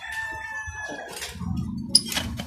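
A rooster crowing: one long, held call that ends a little past a second in. Near the end comes handling noise and a sharp metal click from the magnetron's casing.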